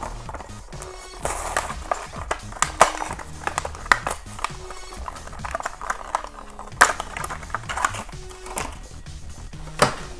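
Clear plastic blister pack of a Hot Wheels die-cast car being pried and torn off its cardboard backing card, giving irregular sharp crackles and clicks. Quiet background music plays underneath.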